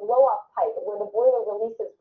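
Speech only: a TV news reporter talking, played back from a web news video.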